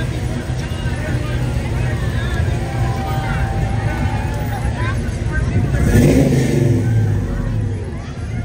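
Car engine running as a parade car passes slowly, with crowd voices in the background. About six seconds in, the engine surges louder and its pitch then falls away.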